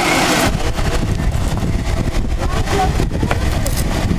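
A Fiat sedan rolling slowly over a rough dirt track with its engine running: a steady low sound, with a hiss that cuts off about half a second in.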